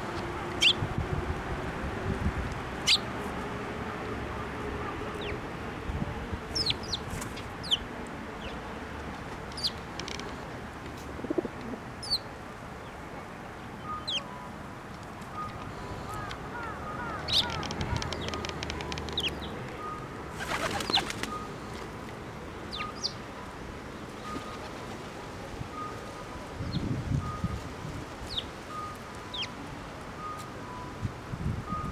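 Eurasian tree sparrows giving short, scattered chirps, with a brief flutter of wings about two-thirds of the way in. A faint, regular two-note beeping runs in the background from about halfway.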